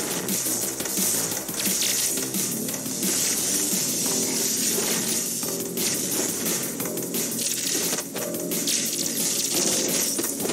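Dramatic music from an animated fight soundtrack, layered with a steady crackling hiss and frequent sharp hits from the fight's sound effects.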